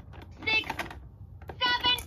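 Buttons on a Fisher-Price Linkimals owl toy clicking as they are pressed in test mode. The toy's speaker answers twice with a short, high-pitched electronic sound.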